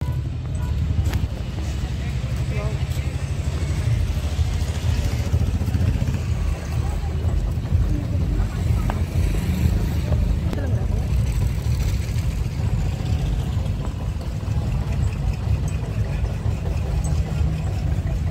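Loud party music from outdoor loudspeakers, heard mostly as a deep, pulsing bass rumble, with people's voices faintly mixed in.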